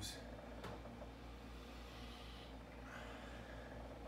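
A man softly sniffing a glass of beer to take in its aroma, a quiet noisy breath swelling about two seconds in, over a steady low room hum.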